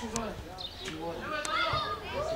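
Young players' high-pitched voices shouting and calling out across a football pitch, overlapping one another, with a few sharp knocks.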